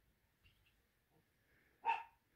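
Kitten giving one short mew just before the end, after a stretch of quiet.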